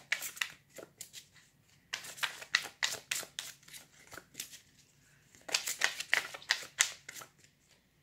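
A deck of oracle cards shuffled by hand, cards slapping and sliding against each other in quick runs of clicks. It comes in three bursts with short pauses between.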